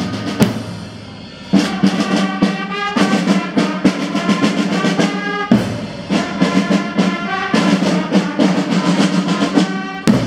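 School marching band of trumpets and marching drums (bass drum and snare/tenor drums) playing a march, with steady drum strokes under the brass. The music drops to a softer lull about half a second in and the full band comes back in about a second later.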